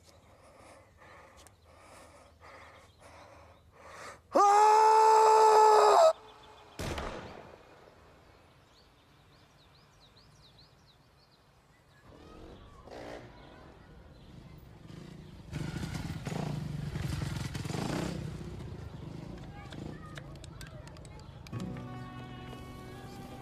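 A man's loud scream about four seconds in, one held cry that breaks off abruptly after under two seconds.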